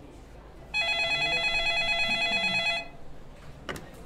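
Office telephone ringing: one warbling ring about two seconds long, then a click near the end as the receiver is picked up.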